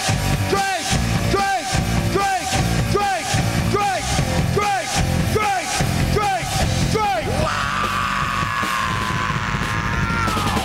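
Live rock band playing loud: drums and distorted guitars with a repeating figure of falling pitch swoops about twice a second. From about seven seconds in the swoops stop and a long held high note slowly falls in pitch over the band.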